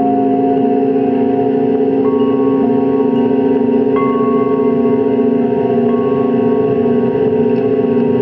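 Live electronic drone music from a keyboard synthesizer run through a mixing desk: a dense, steady layer of sustained tones, with new higher held notes coming in about every two seconds.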